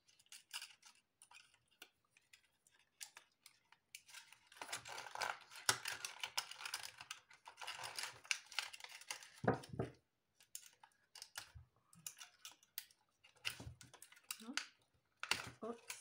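Stiff PET bottle plastic crinkling and clicking as it is handled and fitted, with a dense stretch of rustling from about four to eight seconds in.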